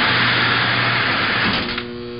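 A loud, steady hiss with a low hum underneath, fading about a second and a half in as a held chord of steady musical tones begins.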